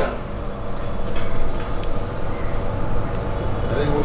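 A steady low background hum, with a few faint knocks and rustles of people moving about a second in.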